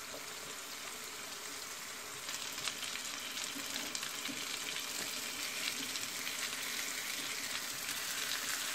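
Grated potato, egg and milk mixture frying in a little oil in a nonstick pan over low heat, just starting to cook: a steady, gentle sizzle that grows a little louder, with fine crackling, from about two seconds in.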